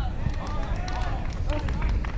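Wind rumbling on the microphone at an outdoor tennis match, with voices talking in the background and a few sharp knocks of the ball struck during a rally.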